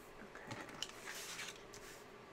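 Paper handling: rustling and rubbing as a hand shifts the planner page and presses a sticker flat onto it, with a couple of light clicks about half a second in.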